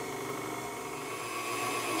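Electric tilt-head stand mixer running steadily, beating butter and powdered sugar into frosting, getting a little louder near the end.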